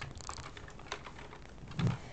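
Computer keyboard keys typed in short, irregular clicks as a line of code is entered. A brief, louder low sound comes near the end.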